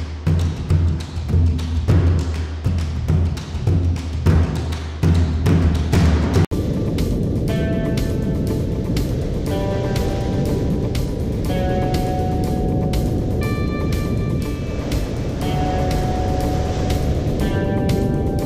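Background music: a pulsing, percussive passage that breaks off abruptly about six and a half seconds in, followed by held notes that change every couple of seconds over a steady rushing noise.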